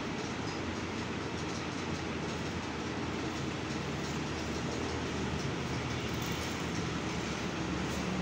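Steady rumbling background noise with a hiss on top, even throughout, with no distinct knocks or voices.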